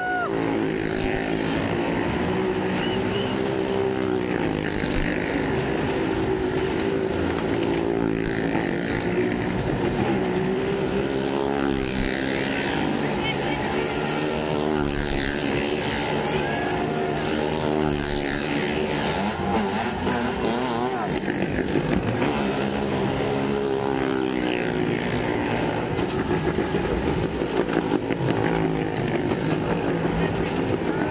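Motorcycles and small car engines revving hard as they circle the vertical wooden wall of a well-of-death drum, their pitch rising and falling over and over in overlapping waves.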